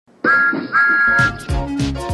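Two short toots of a train whistle, each a steady pair of tones, then upbeat music with a drum beat starts about a second in.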